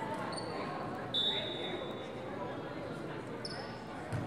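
Echoing gymnasium ambience during a volleyball match: indistinct voices of players and spectators, with a few short high squeaks of sneakers on the court floor, the loudest about a second in.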